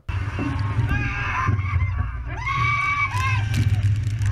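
Riders on a slingshot ride yelling and screaming over a heavy low wind rumble on the ride camera's microphone, the voices rising and falling from about a second in.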